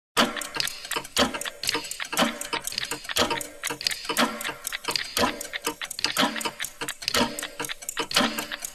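Clock-like ticking in a steady rhythm: a heavier tick about once a second with quicker, lighter ticks between, each heavy tick followed by a short low tone, laid down as a soundtrack.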